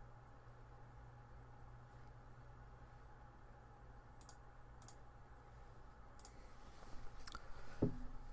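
Near-silent room tone with a steady low hum. A few faint, sharp clicks come in the second half, and a louder knock follows just before the end.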